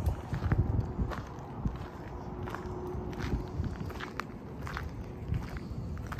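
Footsteps crunching on gravel, an irregular step every half second or so, with a low rumble in the first second.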